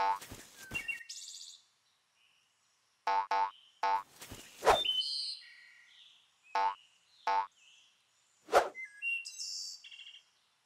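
A string of short cartoon sound effects with silent gaps between them: quick pitched blips, a few sharp hits and high chirping tones.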